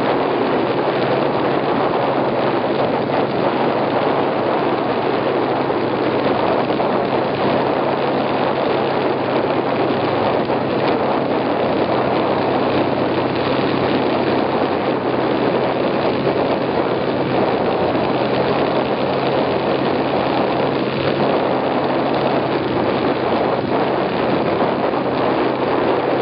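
Snowmobile engine running steadily: an even low hum under a broad, constant noise.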